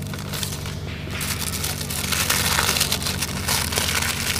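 Red paper wrapper of a firecracker pack being crinkled and torn open by hand, a dense crackly rustle that starts about a second in and goes on.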